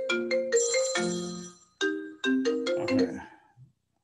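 Mobile phone ringtone playing a repeating marimba-like melody of short notes, which stops about three and a half seconds in. It is an incoming call, which he identifies as one of repeated car-warranty sales calls.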